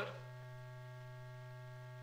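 Steady electrical hum from an old film soundtrack: a low drone with a few fainter steady higher tones above it, unchanging throughout.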